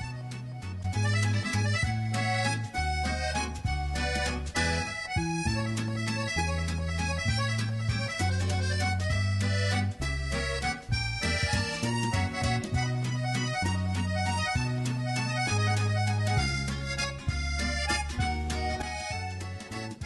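Instrumental background music with a steady bass line and a rhythmic beat.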